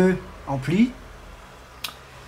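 A man's voice trails off in a hesitating syllable, then a single short, sharp click sounds near the end.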